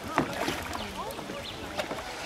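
Water splashing and gurgling as a long bamboo pole is pushed through a shallow river and drawn out beside a bamboo raft, with a sharp knock just after the start.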